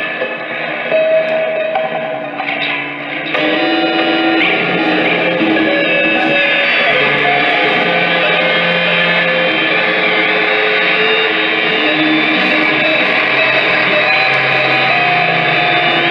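Prepared electric guitar played through an amplifier in free improvisation: a dense drone of many sustained, layered tones that thickens and gets louder about three seconds in, then holds steady.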